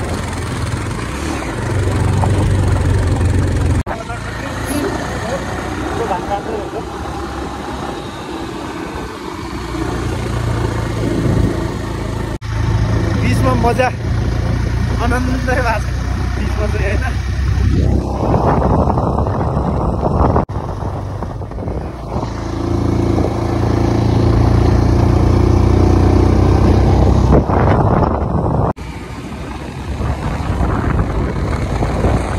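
Motorcycle engine running steadily while riding on the road, with wind rushing over the microphone in places.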